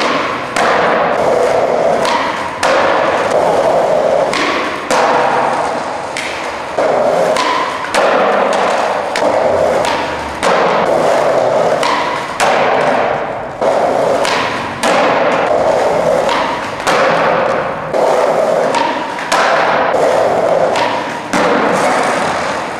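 Skateboard wheels rolling on a rough concrete floor, with repeated sharp thuds from the board's tail popping and the board landing, every one to two seconds.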